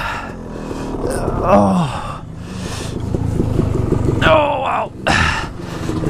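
A rider groaning twice in pain after a crash, his foot caught under the fallen dirt bike, with the bike's engine still running at a low idle underneath.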